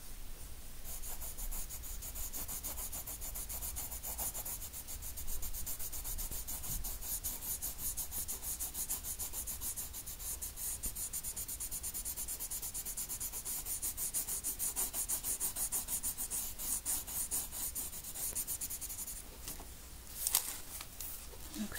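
Coloured pencil shading on paper: quick back-and-forth strokes, about four a second, with a dry scratchy rasp. The strokes start about a second in and stop just before the end.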